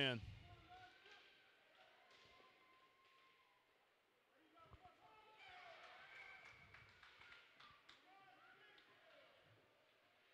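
Near silence: faint ice-rink ambience with distant voices, a little louder past the middle, and a few faint knocks.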